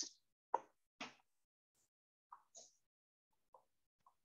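Near silence, broken by about five faint, very short clicks spread over a few seconds.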